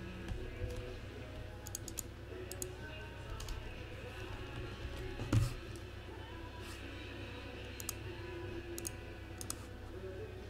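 Scattered clicks from a computer keyboard, many in quick pairs, with one low thump about five seconds in. Faint music and a steady low hum run underneath.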